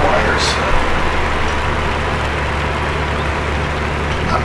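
Steady whooshing noise with a low hum under it, like the cooling fans of bench test equipment, and a brief hiss about half a second in.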